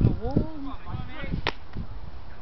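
Distant shouts from players on a football pitch over a low, uneven rumble, with one short sharp crack about one and a half seconds in.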